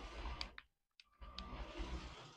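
Lego train's battery-powered motor running, its plastic wheels rolling along the plastic track with small clicks. It stops briefly a little under a second in, then runs again, reversing to climb a shallow ramp that it manages.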